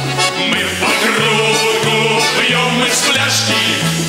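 A man singing a song over band accompaniment led by a button accordion (garmon), with a bass line stepping from note to note.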